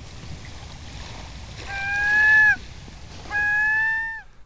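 Intro sound effects: a steady wash of water-like noise, then two long pitched calls, each just under a second and dropping in pitch at the very end. The first call is the louder.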